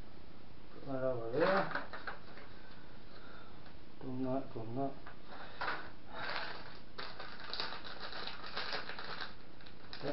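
Small plastic parts bags rustling and crinkling, with light clicks of small parts, as they are picked through by hand; the dense crinkling begins about halfway through.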